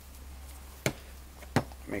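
Two sharp, light clicks, about a second apart, as a new oil seal is worked onto a motorcycle shock absorber's chrome strut shaft by hand, over a low steady hum.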